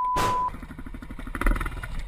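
A censor bleep, a steady beep-tone lasting about half a second, at the start. Then a dirt bike's engine runs with a clatter about one and a half seconds in as the bike goes down on its side.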